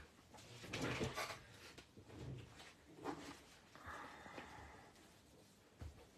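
Several short creaks and light handling noises, spaced a second or so apart, as a rubber stamp is handled on a stamp-positioning platform.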